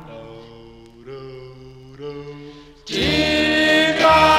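Doo-wop vocal group singing slow, sustained harmony chords without words, moving to a new chord about every second, then swelling much louder into a full held chord about three seconds in.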